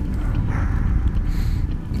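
Wind rumbling and buffeting on the microphone, a steady low rumble with no clear events.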